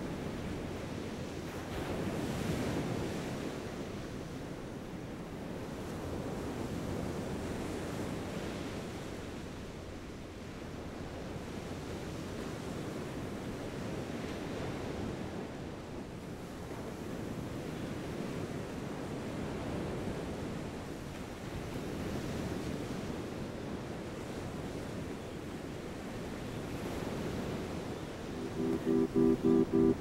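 Ocean surf breaking on a sandy beach, a steady rush that swells and fades as each wave comes in. Near the end, music with a rapid repeating guitar figure comes in.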